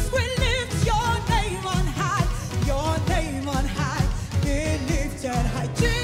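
Live gospel praise music: singers hold notes with wide vibrato and run through melodic turns over a band with a steady drum beat.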